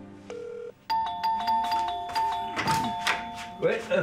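Electronic doorbell chime playing a repeating two-note melody, starting about a second in and running for about three seconds. A man's voice comes in over its end.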